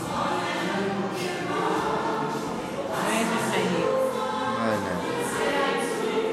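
A choir singing, several voices holding sustained notes and moving between them.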